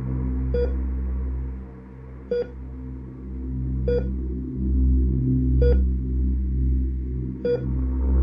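Heart monitor beep sound effect: five short, evenly spaced electronic beeps, slow at about one every 1.7 seconds, over a steady low droning background.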